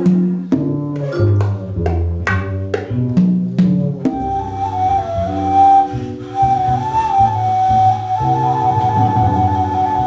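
Live jazz-band music. In the first four seconds or so, a run of struck, ringing accents plays over a bass line and percussion. Then a high wind instrument takes up a long, wavering melody over the bass and percussion.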